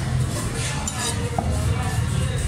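Light clinks and scraping of a large steel cleaver against the wooden chopping block and a whole bhetki (barramundi) as it is handled, over a steady low rumble of background noise.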